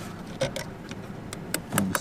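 A few light, scattered metallic clicks and ticks as a screwdriver turns out the terminal screw on a motorcycle battery's positive post.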